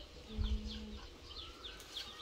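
Small birds chirping: a run of short, quick downward notes repeated several times.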